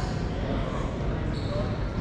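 Rubber racquetball bouncing on the hardwood floor of an echoing racquetball court, with short sneaker squeaks and a slightly louder hit at the very end.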